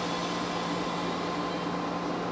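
Steady hum and hiss of a stationary JR 115-series electric train's onboard equipment, heard in the driver's cab, with a constant low tone and a faint higher whine.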